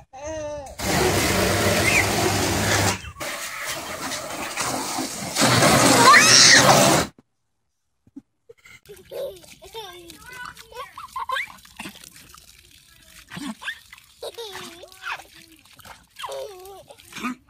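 A loud rush of splashing water lasting about six seconds, easing for a moment in the middle and cutting off suddenly, followed by quieter voices.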